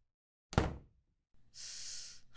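A door shuts with a single heavy thud about half a second in. Near the end comes a long, breathy exhale.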